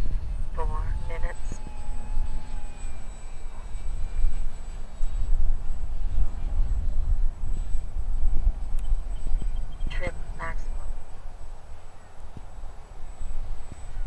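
Wind rumbling on the microphone, with a faint, slightly falling whine from the small brushless electric motor and propeller of an RC plane flying high overhead. Two brief voice-like sounds break in, about a second in and again about ten seconds in.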